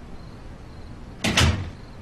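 A room door being shut, closing with a single solid thud about a second and a quarter in.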